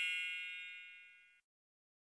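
The tail of a bell-like chime sound effect with several high ringing tones, fading away about a second in.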